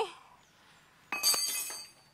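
A single bright, bell-like metallic ring about a second in, fading away within under a second.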